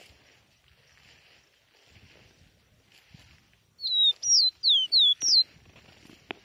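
A caboclinho, a Sporophila seedeater, singing one short phrase of five loud, clear whistled notes, each sliding downward in pitch, about four seconds in.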